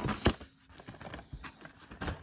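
Cardboard packaging box being opened by hand: a few light clicks and scrapes of the flaps in the first half second, then faint rustling and ticks as the box is handled.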